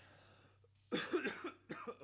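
A man coughs: a harsh cough about a second in, followed by two smaller coughs. It comes from a lingering illness that has left his voice weak for weeks.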